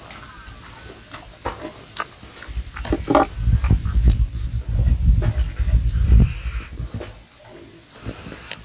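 Close-miked chewing and lip-smacking of a man eating rice and smoked pork by hand, with many short wet mouth clicks. A heavy low rumble rises from about three seconds in and fades before the end.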